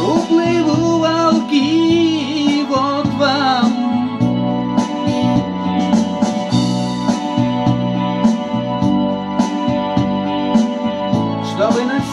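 A man singing in Russian over an electronic keyboard synthesizer playing chords with a drum-machine beat. The voice drops out about four seconds in for an instrumental stretch of keyboard and drums, and comes back in near the end.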